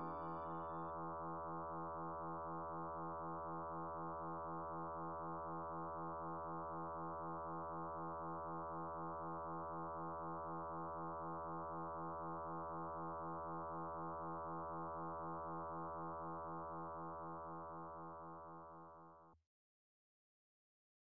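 A steady synthesizer drone chord with an even, gentle pulsing, the long final chord of ambient electronic background music. It fades out over the last few seconds and stops just before the end.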